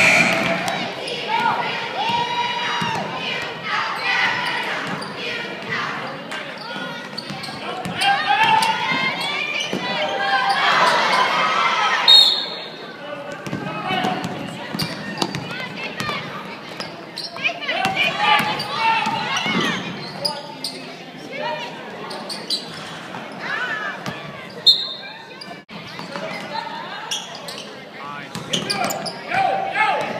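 A basketball being dribbled on a hardwood gym floor, with players and spectators talking and shouting, all echoing in a large gym.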